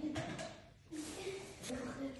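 Faint, low talk in a small room, with a brief near-quiet gap partway through; no distinct cooking sound stands out.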